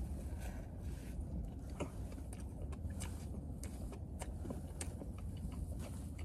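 A person chewing a mouthful of glazed doughnut topped with red sugar: soft, scattered mouth clicks over a low steady hum.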